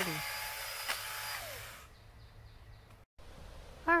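Small electric motor of a pole saw running as it cuts pine branches overhead, a steady whine whose pitch falls just before it stops about two seconds in.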